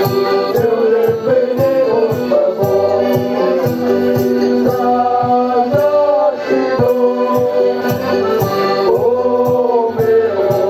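A traditional folk group performing live through a PA: several voices singing together over strummed stringed instruments, with a steady drumbeat about twice a second.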